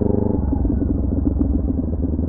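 Kawasaki Ninja 400 parallel-twin engine running as the motorcycle rolls slowly along a street. Its steady note changes and roughens about half a second in.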